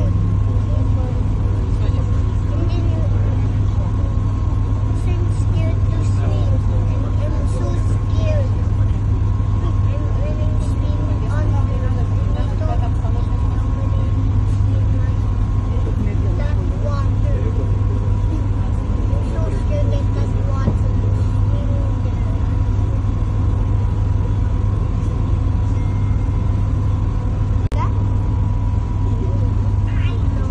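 A boat's engine runs with a steady low drone as it cruises, and indistinct voices talk in the background.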